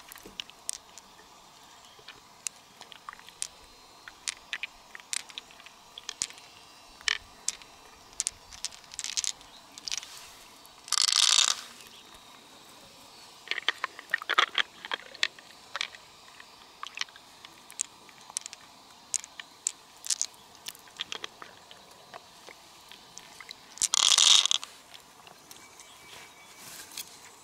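Fingers working through the wet flesh of a large freshwater mussel, with many short sharp clicks and wet squishes as shiny metallic beads are picked out and knock against each other and the shell. Two louder scraping bursts, each about a second long, come about 11 seconds in and again near the end.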